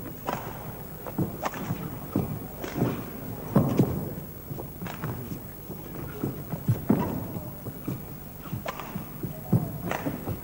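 Badminton rally: rackets striking the shuttlecock back and forth at irregular intervals of about a second, mixed with the thuds of the players' footwork on the court.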